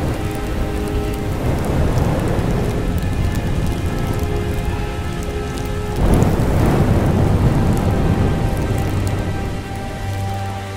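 Rainstorm sound effect from the show's soundtrack: a steady rush of rain with a rumble of thunder swelling about six seconds in, over sustained music notes.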